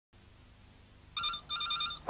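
Electronic telephone ringing: a high warbling trill in two short bursts in a double-ring pattern, starting a little over a second in.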